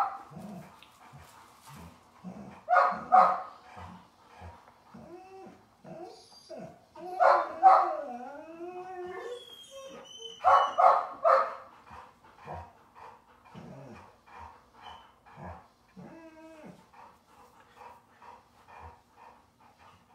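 A puppy barking in quick runs of three or four sharp barks, about 3, 7 and 11 seconds in. In between it whines with a wavering pitch, and it gives softer yips later on.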